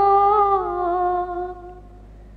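A naat reciter's single voice holding one long note that sinks slightly in pitch and fades out near the end, with no instruments.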